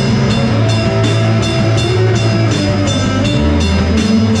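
Rock band playing an instrumental passage: distorted electric guitars over a drum kit, with cymbal strikes about four a second. The low sustained notes drop lower about three and a half seconds in.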